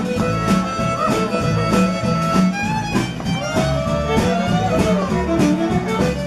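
Live country band playing with no singing: a fiddle carries the melody with sliding notes over a strummed guitar and bass notes, keeping a steady dance beat.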